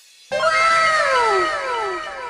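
An added comic sound effect: a loud pitched call that slides downward in pitch, starting suddenly about a third of a second in and repeating in fading echoes.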